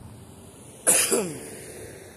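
A man coughs once, a sudden loud cough a little under a second in that trails off over about half a second.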